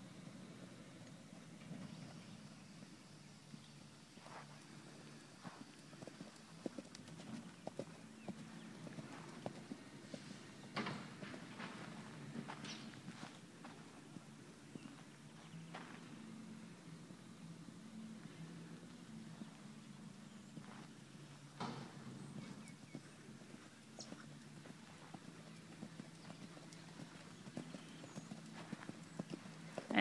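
Faint hoofbeats of a ridden horse cantering on soft ground, with a few sharper knocks now and then.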